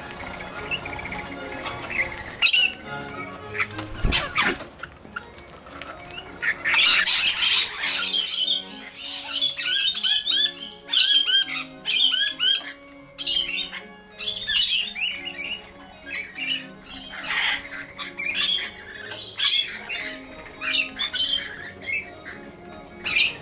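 Rainbow lorikeets screeching: many short, shrill calls in quick, overlapping bursts, over steady background music.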